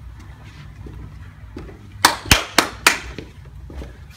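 Footsteps climbing carpeted stairs: about two seconds in, four sharp taps in quick succession over less than a second, after a quiet stretch.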